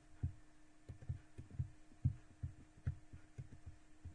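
Soft, dull low thumps, a few a second at uneven spacing, over a faint steady electrical hum.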